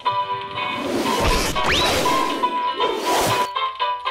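Cartoon background music with a comic crash sound effect about a second in, including a short rising swoop, then a second crash about three seconds in, as the stacked teddy bears topple.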